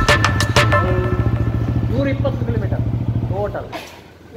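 Motorcycle engine idling steadily. For the first second or so music with a regular drumbeat plays over it. The idle cuts off just before the end.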